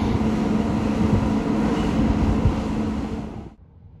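Wind rushing on the microphone over a steady low mechanical hum, cutting off suddenly near the end.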